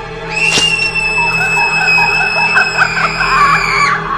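A long, shrill scream held on one high pitch for more than three seconds, sagging slightly before it cuts off suddenly, over dark background music. A sharp hit sounds just after the scream begins.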